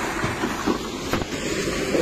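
A dump truck tipping its load of rock and earth: a steady noisy rush of the truck and sliding material, with a couple of faint knocks around the middle.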